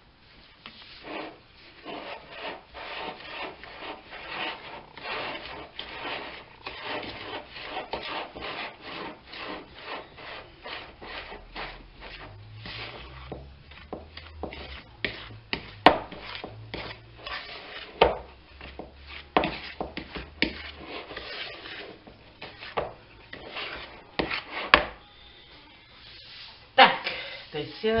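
A fork mashing quark and flour into dumpling dough in a ceramic bowl: quick, repeated scraping strokes, with a few sharper clinks of the fork against the bowl.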